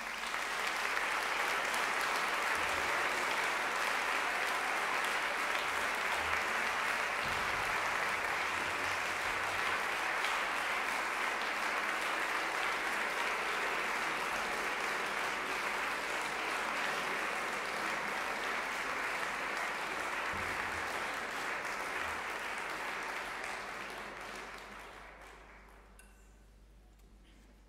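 Audience applauding, steady and sustained, dying away near the end.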